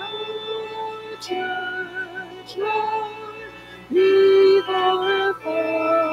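Voices singing a slow hymn to instrumental accompaniment, holding each note with a slight waver.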